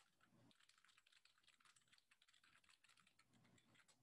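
Very faint typing on a computer keyboard: a quick run of keystroke clicks with a short lull near the end.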